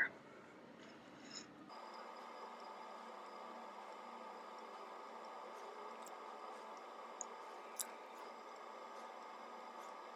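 Faint steady room hum with a few soft clicks near the middle and late part: the small wet sounds of a liquid lipstick's doe-foot applicator being drawn over the lips and the lips parting.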